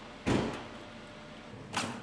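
A short rustling clunk about a quarter second in as the unscrewed metal canister oil filter is handled in a cloth rag, then a brief fainter rustle near the end.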